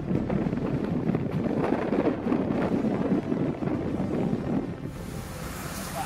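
Steady running noise of a heritage railway coach on the move, heard from inside the carriage: a continuous rumble and rattle with wind on the microphone. About five seconds in it changes to a quieter, hissier outdoor sound.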